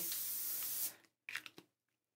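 Aerosol can of June Tailor quilt basting spray hissing in one steady spray that stops just under a second in, followed by a couple of brief faint sounds.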